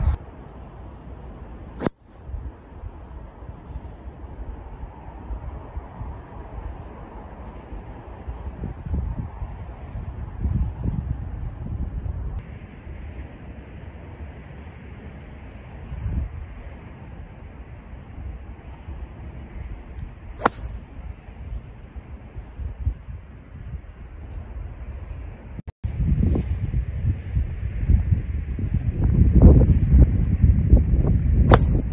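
Golf club strikes: a sharp driver strike off the tee about two seconds in, then two iron shots from the fairway later, which the golfer calls chunked (heavy contact). Wind rumbles on the microphone throughout.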